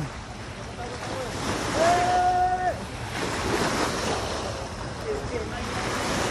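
Small waves washing onto a sandy shore, with wind buffeting the microphone. About two seconds in, a person's voice calls out once, held for about a second.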